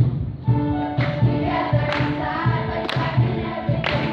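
A choir singing with instrumental accompaniment that carries a steady low beat and occasional cymbal-like hits.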